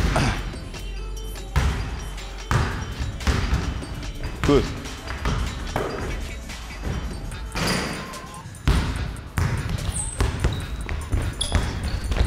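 A basketball bouncing on a hardwood gym floor in irregular sharp thuds during a dribbling drill, with background music underneath.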